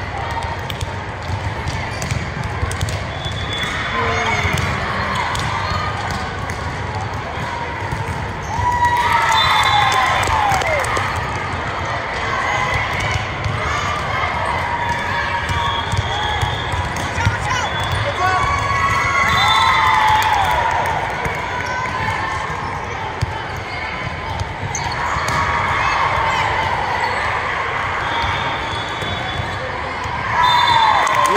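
Indoor volleyball rally in a large gym: repeated sharp ball hits and thuds, with players calling out and spectators' voices that swell several times during play.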